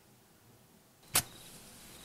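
A cigarette lighter struck once with a sharp click about a second in, followed by about a second of hiss, with faint crickets chirping behind it.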